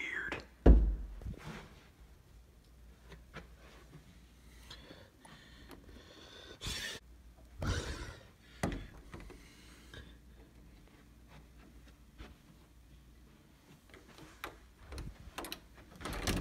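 A heavy thump less than a second in, then a few softer knocks and rustles around the middle, with faint room noise between them.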